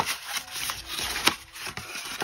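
Scored cardstock being bent and folded by hand, rustling and crinkling along its creases with a few sharp crackles.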